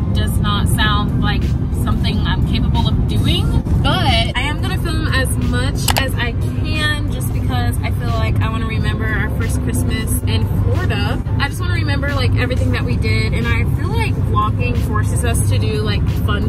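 A woman talking inside a moving car's cabin, over the steady low rumble of road and engine noise.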